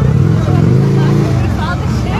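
Motorcycle engine running at the burnout pit, its note swelling and holding for about a second, with crowd voices around it.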